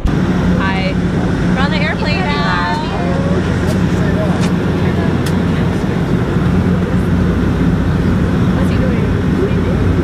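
Steady drone of an airliner cabin, the engine and air noise running with a low hum throughout. A voice is heard briefly in the first few seconds.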